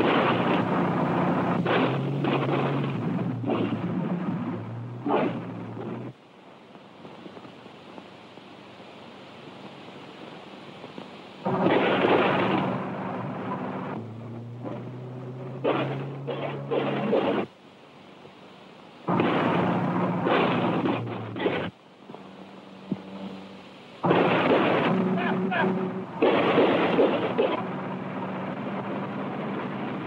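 Rough, rumbling car-chase soundtrack from a worn early-1930s film print, with low droning tones running under a noisy rush. It comes in several loud bursts broken by quieter stretches.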